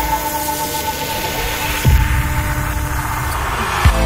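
Background electronic music in a sparse passage: a sustained hum-like tone with two deep bass thumps, and a swell rising toward the end.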